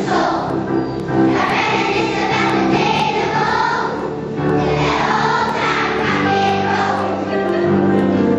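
A large choir of young schoolchildren singing together over a musical accompaniment.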